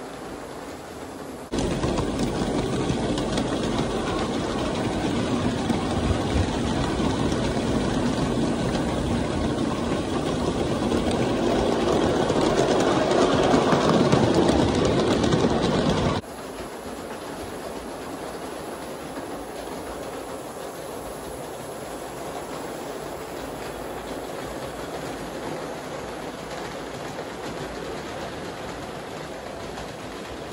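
Live-steam G-scale model locomotive running on its track, a steady rush of steam and wheel noise. About a second and a half in it turns much louder and swells a little, as heard up close from the train itself. About halfway through it drops suddenly to a softer steady running sound.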